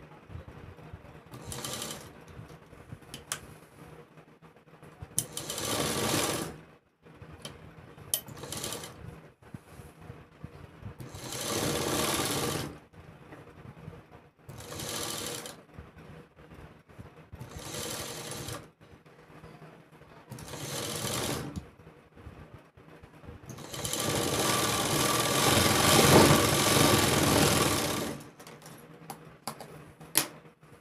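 Sewing machine stitching in stop-and-start runs of a second or two. A longer, louder run of about five seconds comes near the end, and light clicks fall in the pauses between runs.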